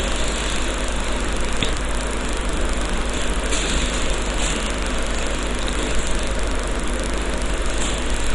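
A spoon scraping and tapping as ground paste is emptied from a bowl into an aluminium kadai, a few faint scrapes over a steady hiss.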